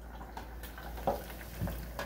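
Hot oil in an electric deep fryer bubbling and sizzling around breaded grit cakes, with faint scattered crackles.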